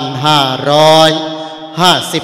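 A Thai Buddhist monk's voice intoning a sermon opening in a melodic, chant-like recitation into a microphone, with a long held note partway through.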